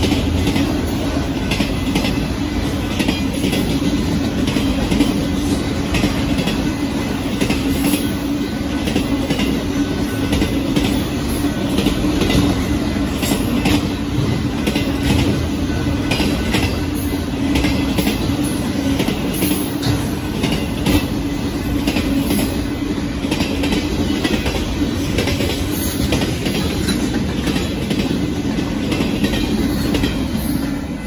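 Union Pacific freight cars rolling past close by: a steady rumble of steel wheels on rail with repeated clicks as they cross the rail joints. It begins to fade at the very end as the last car goes by.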